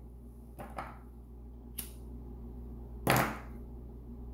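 A few short scrapes and a sharp click, with the loudest scrape about three seconds in, from scratching a lottery scratch-off ticket on a tile surface.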